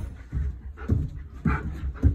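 Excited German Shepherd panting and making short breathy sounds, about two a second.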